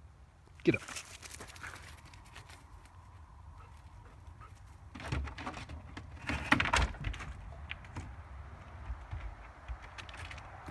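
A Labrador's paws knocking on a wooden board ramp and shed roof as she climbs. The knocks come in a cluster between about five and seven seconds in, with a few more near eight seconds, over a steady low rumble.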